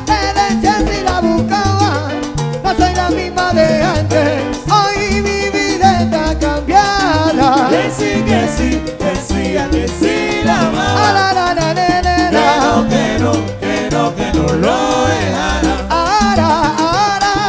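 Live salsa band playing loud and without a break: conga drums, a stepping bass line, and several voices singing at microphones.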